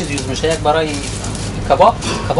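A person's voice speaking in short phrases, over a steady low hum.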